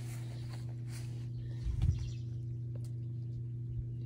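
A steady low hum of a few constant tones, with one dull thump a little under two seconds in.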